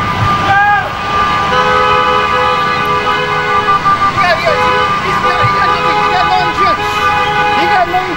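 A car horn held down in one long, steady blast, starting about a second and a half in and stopping just before the end, with voices over it. It is heard as video playback over the room's speakers.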